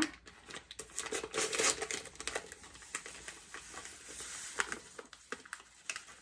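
A plastic pouch of crumb crust mix crinkling as it is handled and emptied into a mixing bowl, with dry crumbs rustling into the bowl. Brief crackles and clicks are scattered throughout.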